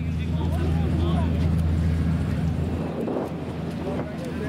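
Steady low engine drone with indistinct voices chattering in the background; the drone weakens about three seconds in.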